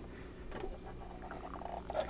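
Faint handling sounds of a clear plastic display case being fitted over a diecast model car's base: soft plastic contacts and rubbing. A low steady hum lies under it.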